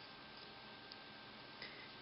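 Near silence with a few faint, irregular clicks of bamboo double-pointed knitting needles touching as stitches are worked.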